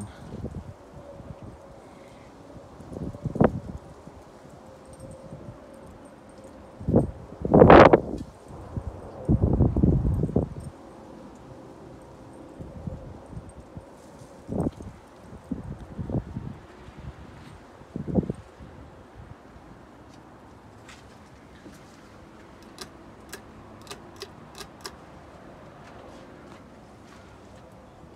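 44-inch Hunter Stratford II ceiling fan running steadily, overlaid by several irregular low thumps and rumbles, the loudest about eight seconds in. A run of light, quick clicks comes near the end.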